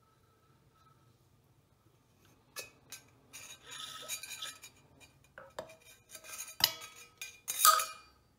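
A stainless-steel puttu pipe clinking and scraping against a plate and steamer as steamed puttu is pushed out onto the plate. It is quiet for the first two seconds or so, and the loudest sharp metal clinks come near the end.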